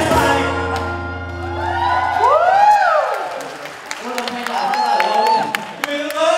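Final chord of a song on two acoustic guitars, ringing out and fading over about two seconds. After it, a voice slides up and falls back down, and a few more scattered vocal sounds follow.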